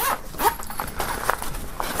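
Zipper on a polyester belt bag being pulled shut, in short irregular runs.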